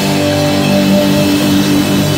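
Live rock band playing loudly: electric guitars holding sustained notes over a drum kit and cymbals.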